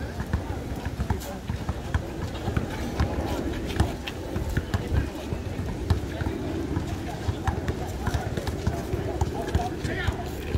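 A basketball bouncing on an asphalt court, with sneakers scuffing as players run, heard as irregular knocks over a background of players' voices.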